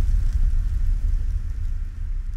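Deep, low rumble slowly fading away: the tail of a cinematic boom hit from a horror-style transition sound effect.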